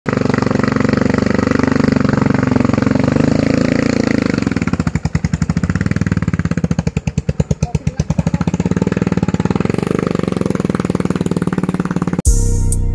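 Large-displacement motorcycle engine running under load on a steep uphill. About five seconds in its note drops to a slow, even beat and then picks up again, the engine bogging as it fails to make the climb, which the uploader puts down to a late gear change or an engine problem.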